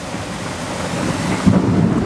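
Steady rain falling with thunder rumbling, the rumble swelling about one and a half seconds in.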